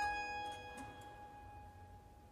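A harpsichord chord rings on and dies away during a pause in the playing. A few faint clicks come near the middle.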